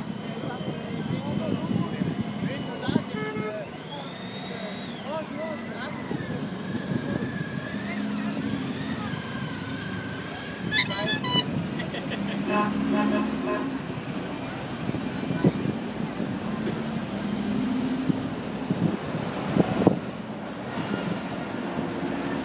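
Ambulances in convoy driving past in road traffic, sounding their horns in short toots several times, with a siren wailing up and down in the first half, over the hum of traffic and voices.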